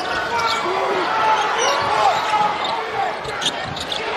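Basketball game sounds on a hardwood court: sneakers squeaking in short squeals and the ball bouncing, over a steady roar of the arena crowd.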